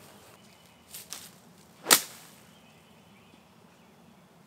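A five iron struck in a short punch shot: one sharp, loud crack as the clubface meets the ball, just before the two-second mark.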